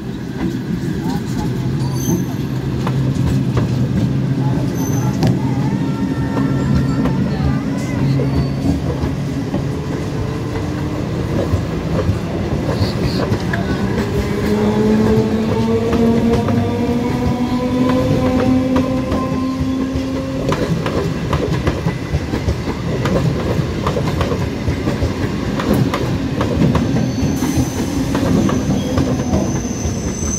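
Eastern Railway EMU local train running past close by, a steady rumble and clatter of wheels on rail. From about ten seconds in, a whine rises slowly in pitch for some ten seconds as the electric traction motors pick up speed.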